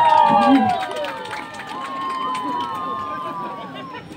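A group of people calling out long, drawn-out shouts together in overlapping voices, loudest in the first second and then dying down, with scattered sharp claps or knocks.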